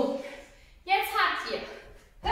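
A woman's voice calling out short rhythm syllables like "bum" to count a dance step: one at the start and a longer one about a second in.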